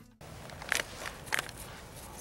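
Two short rustling, scuffing sounds, about half a second apart, over a faint outdoor background.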